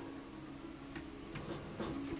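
Faint, quiet drama underscore: a low sustained tone with a few soft ticks about a second in and near the end.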